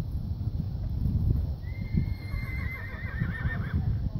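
A horse whinnies once, a high wavering call lasting about two seconds that starts partway through, over a steady low rumble.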